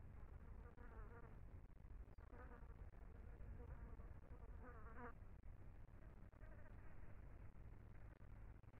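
A fly buzzing faintly in three short passes, about one, two and a half and five seconds in, the pitch wavering as it moves. Under it is a low steady rumble.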